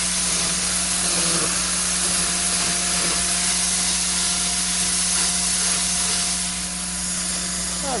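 Chainsaw running at speed while carving into a block of wood, a loud, unbroken buzz that eases slightly near the end.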